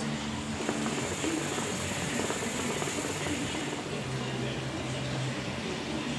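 Hookah bubbling steadily in its water base as a long hit is drawn through the hose.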